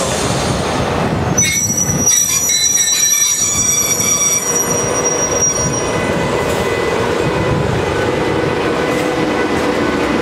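Class 92 electric locomotive pulling away at close range: steady rumble of its wheels and bogies, with a high-pitched wheel squeal from about a second and a half in until about six seconds, then the rumble carrying on with a faint steady tone over it.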